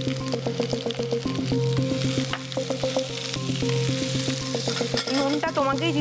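Sliced star fruit and dried red chillies sizzling as they fry in oil in a pan, stirred with a spatula, with light clicks. Steady background music plays underneath.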